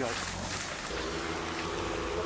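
An engine hum that sets in about a second in and holds a steady pitch, over low wind rumble on the microphone.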